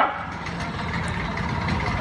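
Auto-rickshaw engine idling: a steady, noisy low running sound with street background.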